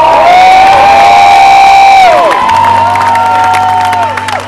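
Concert crowd singing along loudly to the wordless "lie-la-lie" refrain in two long held notes, the second one higher, with the band's bass notes coming in underneath about halfway through.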